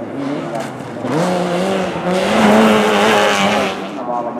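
Rally car engine revving hard as the car accelerates through the bend, its pitch climbing about a second in and then holding high, with a rushing hiss of tyres throwing snow over it in the second half.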